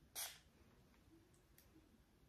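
A single short spritz from a body mist pump-spray bottle, a brief hiss about a quarter of a second long just after the start, then near silence.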